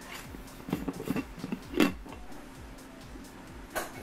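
Stainless steel insulated food jar being handled and its lid unscrewed and lifted off: a few light clicks and knocks, the sharpest about two seconds in.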